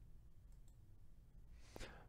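Near silence: faint room tone with a low hum, and a single faint click near the end.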